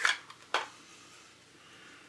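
Light handling sounds of small hobby supplies being set down on the work board: a short rustle at the start and one sharp click about half a second in, as a polishing compound tube and its box are put aside.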